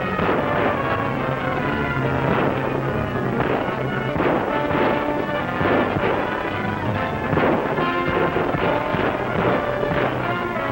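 Dramatic orchestral score from an old film soundtrack, dull and thin in tone, with short sharp cracks repeatedly cutting through it.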